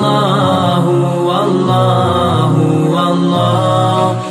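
Islamic devotional song (a hamd to Allah) sung in long held, wavering vocal notes.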